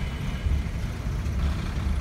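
Low steady rumble inside an airliner cabin as the plane taxis to the terminal after landing, swelling a little now and then.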